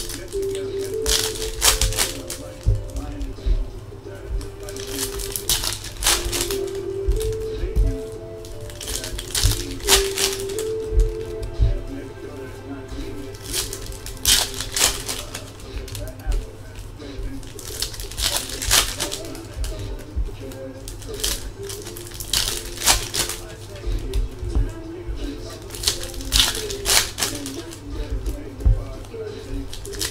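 Foil trading-card pack wrappers crinkling and tearing as packs of 2017 Topps Chrome baseball cards are ripped open, in short bursts every few seconds. Background music and faint speech run underneath.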